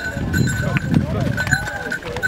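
Ponies' hooves clip-clopping on a rocky trail, with people's voices talking around them.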